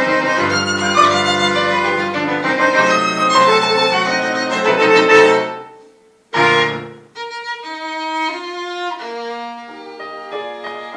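A violin leads a small ensemble of keyboard harmonica and electric keyboard in a busy, full passage. About six seconds in, the music drops away and one short, loud chord is struck. A sparser passage of separate violin and keyboard notes follows.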